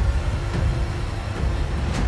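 Low rumbling drone of dramatic background music, with a faint sustained tone above it.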